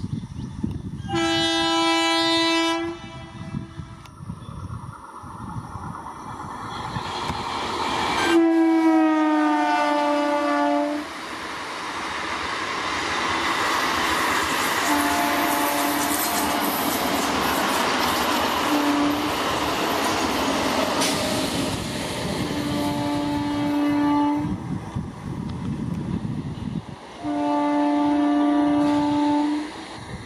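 Indian electric multiple-unit trains sounding their horns: about six long blasts, one falling slightly in pitch. In the middle, coaches rush past at speed with steady wheel and track noise.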